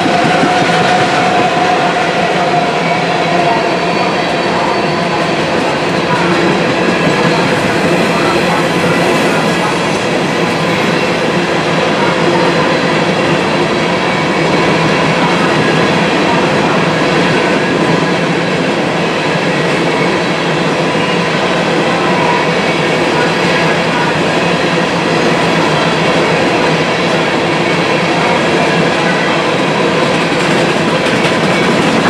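Freight train hopper cars rolling past at a steady speed: a continuous loud rumble and rattle of steel wheels on the rails. A thin squealing tone from the wheels fades out about three seconds in.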